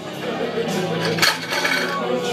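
Metal barbell plates clinking, with one sharp clink a little past halfway.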